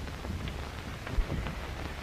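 Steady hiss and crackle of an old optical film soundtrack, with a single low thump about a second in.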